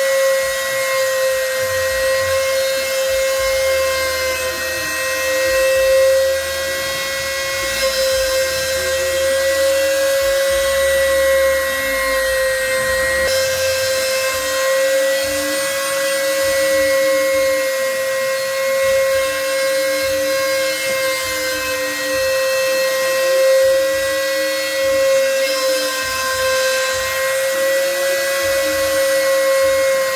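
Trim-router spindle of a CNC router running at a steady high whine while its bit mills a pocket into a wooden block. Fainter lower tones step to new pitches every few seconds as the machine's axes move.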